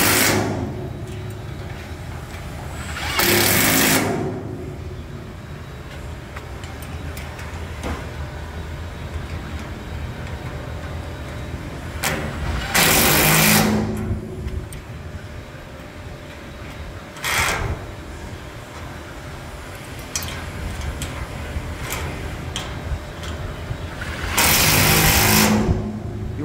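Cordless impact wrench run in four short bursts, each half a second to a second and a half, tightening stainless-steel bolts into lock nuts on an aluminum brace. A steady low hum runs between the bursts.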